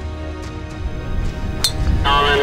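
Background music with a steady low bass. About one and a half seconds in comes a single sharp crack: a long-drive golfer's driver striking the ball off the tee.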